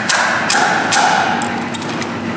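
A Petri dish of dried raspberry flowers being tapped to shake loose the pollen: about three light knocks roughly half a second apart, over a steady background hum.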